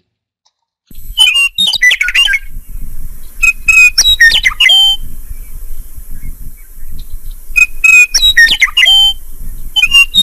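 A recorded meadowlark song used as a sound effect. Clear whistled phrases come in three bursts, starting about a second in, over a low background rumble of the field recording.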